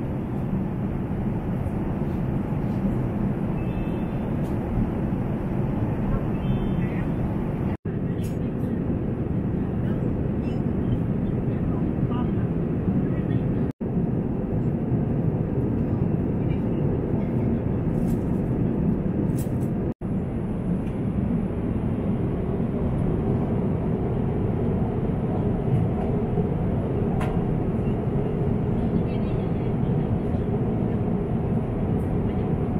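Steady cabin noise of a jet airliner in cruise: an even, deep rush of engine and airflow. It drops out for an instant three times.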